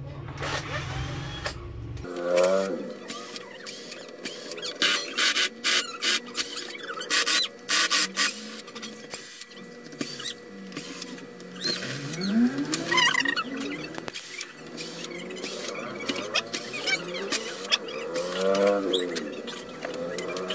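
Cordless drill-driver backing screws out of a TV's back cover: the motor drones, then whirs in short runs whose pitch rises and falls with the trigger. Sharp clicks and small rattles come between the runs.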